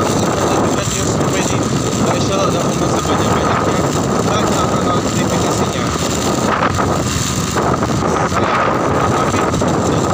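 Steady rush of wind and road noise on a moving motorcycle, with the bike's engine running underneath.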